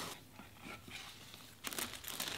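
Faint handling of a cardboard gift box, then a louder crinkling of tissue paper starting about a second and a half in as the paper is pulled from the box.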